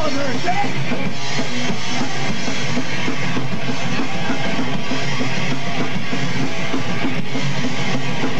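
Live punk rock band playing a song at a steady, loud level, driven by a full drum kit.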